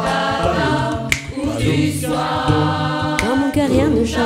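A small a cappella vocal ensemble singing in harmony, several voices holding chords over a low sustained bass line, ending a phrase on the word "live".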